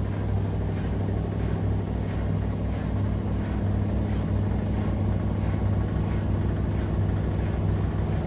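Front-loading washing machines, a Miele W1 and an AEG, running a wash cycle: a steady low motor hum with a fast, even low pulse as the drums turn.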